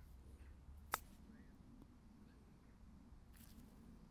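A golf club chipping a ball out of the rough: one short, sharp click of the clubface on the ball about a second in, against near silence.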